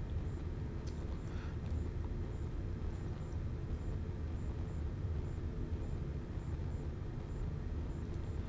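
Steady low rumble of background room noise, with a faint click about a second in.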